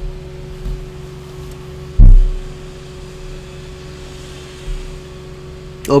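Steady low electrical hum with faint fixed tones, broken by one short, dull, low thump about two seconds in.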